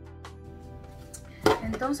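Soft background music with held guitar-like notes; about one and a half seconds in, a single sharp knock of something hard being set down, and a woman's voice begins right after it.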